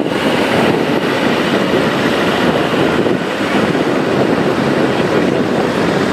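Steady, loud noise of heavy road-construction machinery and vehicles running, starting abruptly.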